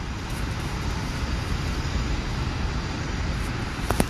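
Steady background noise, a low rumble with hiss and no distinct events, with a faint click just before the end.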